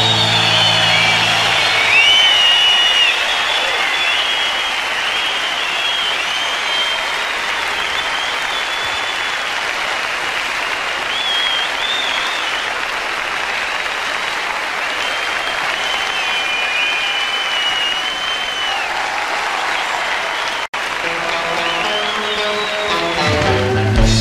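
Live concert audience applauding with high whistles between songs; the band's last notes die away in the first couple of seconds and music starts up again near the end. The sound cuts out for an instant about three quarters of the way through.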